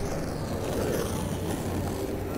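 Skateboard wheels rolling over asphalt, a steady low rumble with no clacks or tricks.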